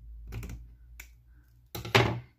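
Scissors cutting a small strip of velcro: a faint snip early, a sharp click about a second in, and a louder cut near the end.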